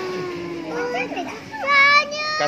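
Voices of excitement over the food: a long, drawn-out exclamation tails off. It is followed by short bits of talk and then a loud, high-pitched child's call near the end.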